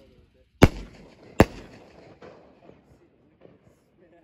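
Two consumer aerial artillery-shell fireworks going off, two sharp bangs less than a second apart, each trailing off in echo.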